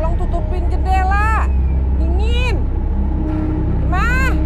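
A woman moaning in distress: several drawn-out cries without words, each rising and then falling in pitch, over a low steady rumble.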